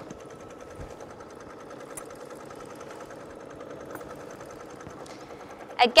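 Computerised embroidery machine stitching steadily, running the tacking stitch that secures the layers of the project in the hoop.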